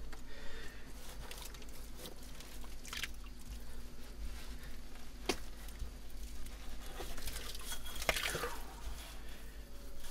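Hands digging through wet mud and soil, squelching and scraping, with scattered small clicks and crunches and one sharper click about halfway through.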